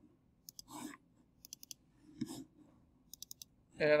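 Light, sharp computer mouse clicks in three quick clusters of a few clicks each, about a second apart, as folders are opened one after another.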